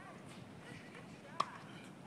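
A single distant pock of a tennis ball struck by a racket, about one and a half seconds in, over a faint background.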